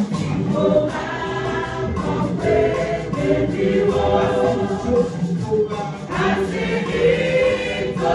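A church choir singing a hymn in Ewe together, one voice led through a microphone.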